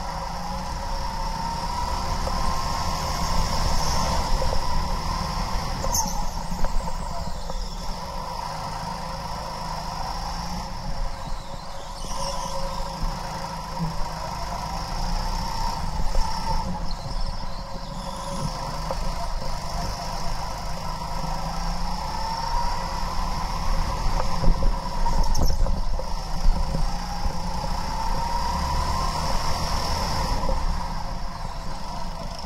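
A go-kart's motor heard onboard while lapping, its whine rising and falling in pitch every few seconds as the kart speeds up and slows through the corners, over a steady low rumble.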